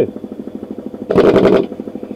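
Air compressor running with a rapid, even pulsing, with a louder short burst about a second in.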